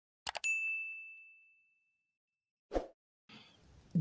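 Sound effects for a subscribe-button animation: a quick double mouse click, then a bright notification-bell ding that rings out and fades over about two seconds. A brief soft burst of noise follows near the end.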